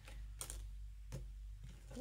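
Oracle cards being handled and shuffled: a few faint, short clicks and taps of the cards, about three in two seconds.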